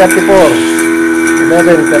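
Refrigeration vacuum pump running with a steady hum, pulling a vacuum on the air conditioner's refrigerant circuit.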